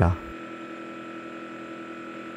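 LCD resin 3D printer running, a steady hum with several fixed tones over a light hiss.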